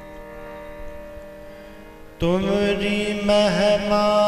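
Kirtan: a harmonium holds a soft sustained chord, then a little over two seconds in the music swells suddenly loud as a male voice enters on a long held sung note that wavers slightly.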